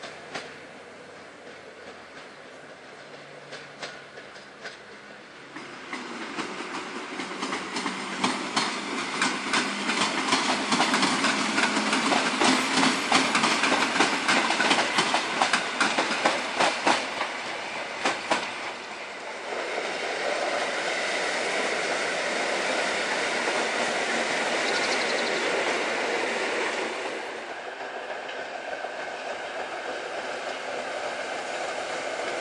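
Passenger trains running on jointed track: a quieter approach, then several seconds of loud clickety-clack of wheels over rail joints, followed by a steadier rumble that drops off near the end.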